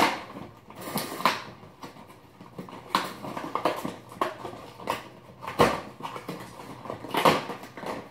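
Cardboard advent calendar box handled as its small door is opened and the item inside is pulled out: a string of irregular rustles, taps and scrapes.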